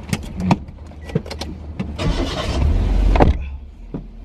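Inside a minivan's cabin: scattered clicks and knocks of people moving about in the seats, over the vehicle's low rumble. About two seconds in comes a longer rushing noise with a deeper rumble, ending in a heavy knock just after three seconds.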